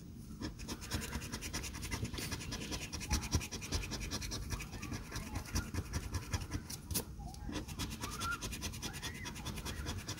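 A coin scratching the coating off a paper scratch-off lottery ticket in quick rubbing strokes, several a second, with a brief pause about seven seconds in.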